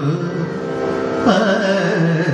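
Male voice singing a Kathakali padam in the Carnatic style, holding long notes that bend in pitch. A new phrase begins with a sharp upward swoop about a second and a half in.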